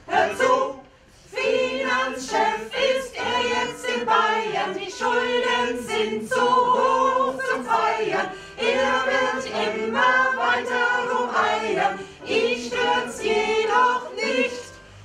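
A small mixed choir of men and women singing together, with a short break about a second in.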